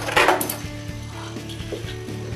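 Two metal Beyblade tops (Scythe Kronos) spinning and clashing in a plastic stadium: a quick run of sharp clacks just after the start as one is knocked out over the rim, then the steady whir of the top still spinning. The older top's worn tip keeps sending it out of the stadium.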